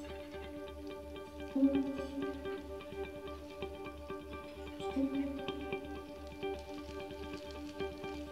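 Free improvised electroacoustic ensemble music: a bed of held electronic drone tones over a steady low pulse, with scattered small clicks and ticks. A louder accented tone sounds about one and a half seconds in and again about five seconds in.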